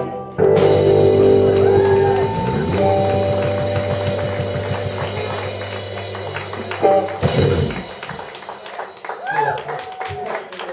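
Live rock band of electric guitar, bass guitar and drum kit ending a song: a final chord held and slowly fading with cymbal wash for several seconds, closed by a last sharp hit about seven seconds in. Voices follow near the end.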